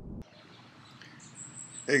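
Low opening music cuts off a quarter second in. Then comes faint hiss with a thin, high-pitched insect chirring that starts about a second in, and a man says 'Hey' at the very end.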